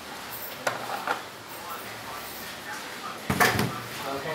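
A few faint clicks of handling, then one short, heavy thump a little over three seconds in: a plastic vacuum flask being put down on a glass-topped table.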